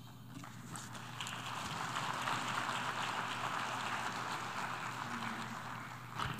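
Delegates applauding at the close of a speech: scattered clapping that builds over the first couple of seconds and slowly thins out toward the end.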